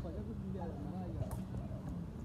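Several men's voices calling and talking across an open field during a ball game, over a low steady hum, with one sharp tap a little past the middle.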